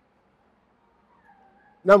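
A pause in conversation: over a second of near silence, a faint brief high tone about a second and a half in, then a man starts speaking near the end.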